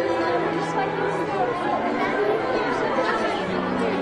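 Indistinct chatter of several voices over background music with held low notes.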